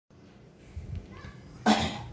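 A man coughs once, short and sharp, near the end.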